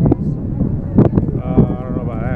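A loud, sharp crack about a second in, then a drawn-out shout near the end, over a steady low rumble of wind on the microphone.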